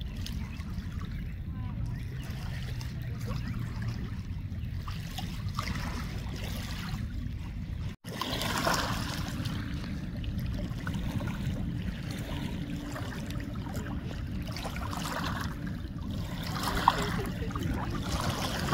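Steady low rumble of river ambience with faint, indistinct voices. After a brief break partway through, a fuller rushing sound as water churns out from the base of a dam lock.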